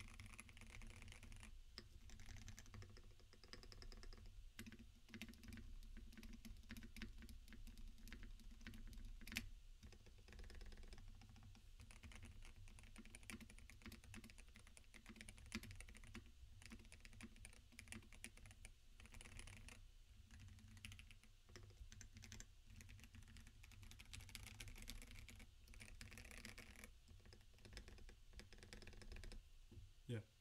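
Continuous fast typing on an NK87 Entry Edition mechanical keyboard fitted with lubed and filmed Holy Panda tactile switches, Durock V2 stabilisers and a foam-modded case: a steady stream of keystrokes, with one sharper key strike about nine seconds in.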